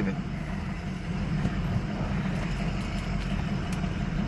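Pickup truck running at low speed over a gravel road, heard from inside the cab: a steady low drone with a light, even road noise and a few faint ticks.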